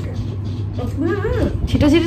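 A short high-pitched vocal sound from a woman, rising and falling, about halfway through, with another starting near the end, over a steady low hum.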